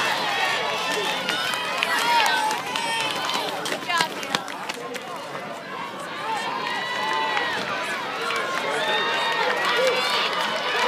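Spectator crowd at a track meet shouting and calling out, many voices overlapping, loudest in the first few seconds as the hurdlers run, with a brief sharp sound about four seconds in.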